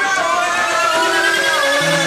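Rock song in a breakdown: the drums and bass are out, leaving sustained instrument notes that slowly glide upward. A low bass note comes in near the end.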